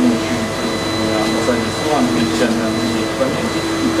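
Steady, loud whirring of a motor-driven fan or blower, with a fixed hum, and a man's voice half-buried beneath it.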